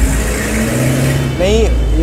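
Street traffic noise: a motor vehicle's engine running close by as a steady low hum with hiss, and a brief spoken sound about one and a half seconds in.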